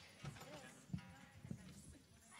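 Faint, irregular low thumps and knocks of people stepping about and shifting gear on a stage riser, three of them standing out, with faint talk in the background.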